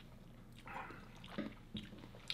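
Faint wet mouth sounds of whisky being sipped from a tasting glass, with a couple of small clicks of the lips or glass in the second half.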